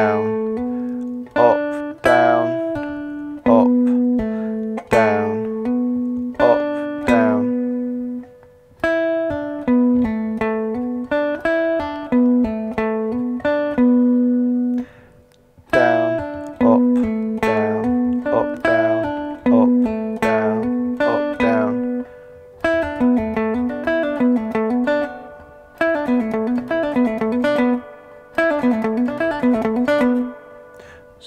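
Three-string cigar box guitar playing a hammer-on and pull-off exercise: a picked note followed by notes sounded by the fretting hand alone, pulled off and hammered on. The phrase repeats several times with short breaks and turns into a faster, denser run in the last third.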